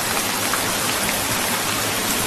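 Steady rain falling, an even hiss with no breaks.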